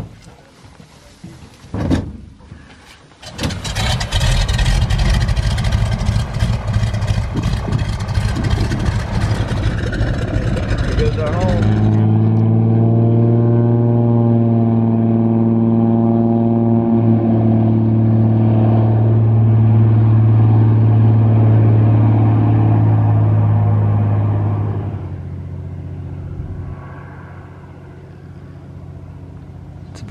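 Single-engine floatplane taking off from a lake. About three seconds in, the engine and propeller go to full power with a loud rushing noise of spray. This gives way to a steady drone that falls away over the last few seconds as the plane flies off.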